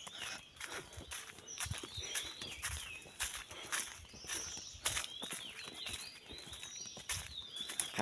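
Birds chirping over and over in the trees, short high falling and arching calls, with footsteps on a forest path.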